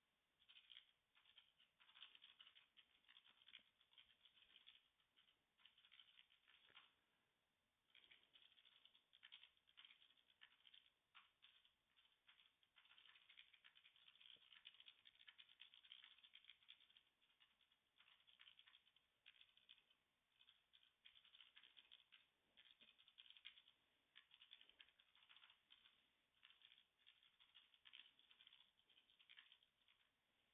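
Faint typing on a computer keyboard, in quick runs of keystrokes with short pauses between them.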